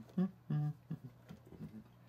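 A few short hummed "mm" sounds from a person's voice, one held briefly about half a second in, then fainter ones.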